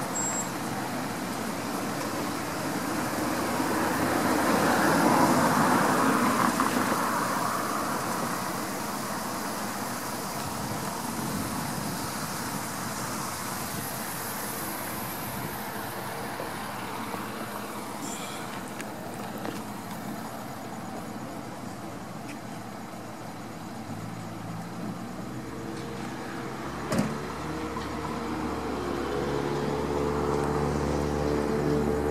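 Road traffic noise: a passing vehicle swells and fades a few seconds in, then a steady wash of traffic. Near the end a set of steady tones comes in, with a short knock just before the close.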